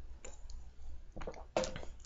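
A few faint clicks in a quiet pause, then a short spoken word.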